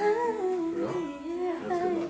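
A voice humming a wavering, wordless melody, with acoustic guitar notes ringing underneath.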